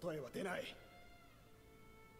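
A man's voice from the subtitled anime's Japanese dialogue delivers a short line at low volume, followed by quiet background music with steady held notes.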